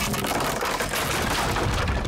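Cartoon sound effect of a wooden boat crunching and splintering as it is dragged and broken apart: a dense crackling, cracking noise over a low rumble.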